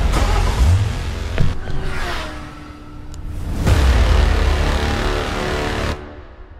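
Loud produced intro music with sound effects: heavy low rumbling swells and a falling tone about two seconds in, cutting off abruptly at the end.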